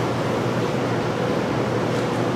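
Steady, even hiss of room or recording background noise with a low hum underneath.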